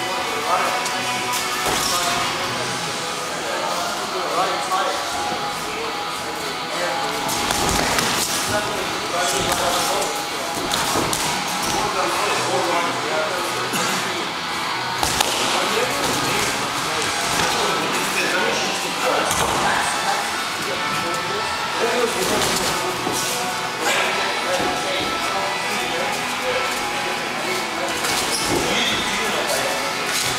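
Boxing gloves thumping as punches land in sparring, several sharp hits scattered through, over steady background music and indistinct voices.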